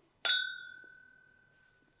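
Two whiskey tasting glasses clinked together once in a toast. The glass rings with one clear note that fades away over about a second and a half.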